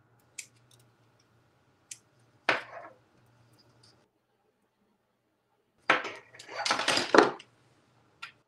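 Gunpla plastic model kit parts being snipped from their runners with hobby nippers: a few sharp plastic clicks and snips, the loudest about two and a half seconds in. Near the end, a louder snip and about a second of clattering plastic as a runner is handled.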